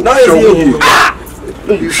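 A man speaking loudly in an argument: a drawn-out word falling in pitch, then a short hiss about a second in.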